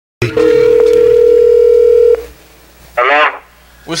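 A telephone ringing tone as heard down the line by the caller: one steady, single-pitched ring lasting about two seconds. A short spoken answer through the phone follows about a second later.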